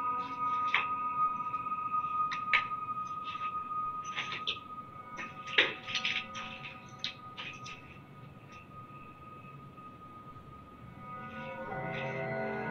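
Background ambient music of held, drone-like tones, with sharp clicks and knocks scattered through the first half. It sinks low about two-thirds of the way through and swells back near the end.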